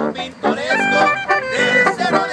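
A Mexican brass banda (sousaphone, trumpets and clarinet) playing, with sustained chords held on the horns from about half a second in.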